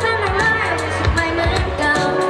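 A young singer singing a pop song into a microphone, amplified over a backing track with a steady beat and bass.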